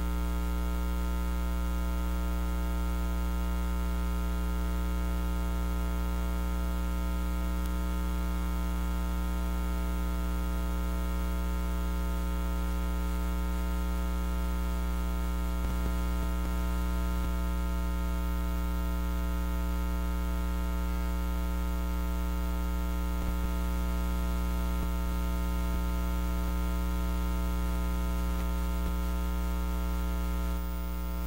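Steady electrical mains hum with a buzzy stack of overtones, unchanging throughout, with two faint clicks partway through.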